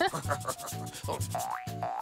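Cartoon eraser sound effect: quick repeated rubbing strokes of an eraser, over light background music.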